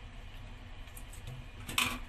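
One short metallic clink with a brief ring near the end, steel scissors knocking against a stainless-steel sink. A faint low steady background noise runs under it.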